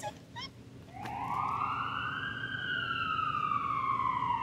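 Emergency-vehicle siren wailing: one slow upward sweep that starts about a second in, then a long, slow downward glide.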